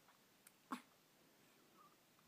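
Near silence, broken just after three-quarters of a second in by one very short vocal sound from an infant, with a faint click just before it.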